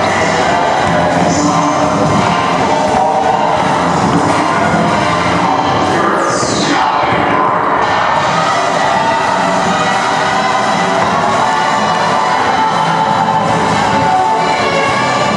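Latin ballroom dance music playing loud and steady with a beat in a large hall, with spectators cheering over it. About six seconds in, one high sound slides down in pitch.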